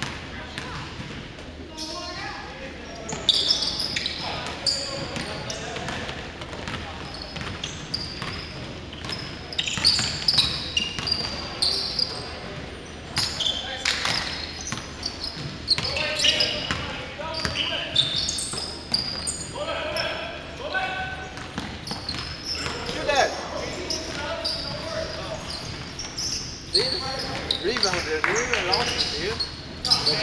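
A basketball being dribbled and bouncing on a hardwood gym floor during play, a run of sharp irregular knocks.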